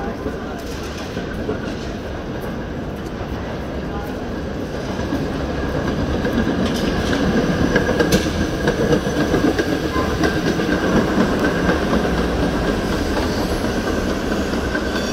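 Historic PCC streetcar running along street rails and passing close by. It grows louder from about a third of the way in, peaks near the middle, and its wheels click on the rails as it goes by.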